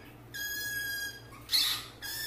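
White-fronted Amazon parrot calling: one held note at an even pitch, then a short, louder call about one and a half seconds in.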